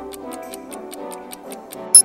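Quiz countdown timer sound effect: rapid, even clock ticking, about six or seven ticks a second, over background music. Right at the end a short, loud, high-pitched chime sounds as the timer runs out.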